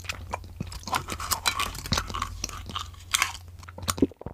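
Close-miked chewing of crunchy food: a rapid, irregular run of crisp crunches and bites, loudest around the middle and a little after three seconds.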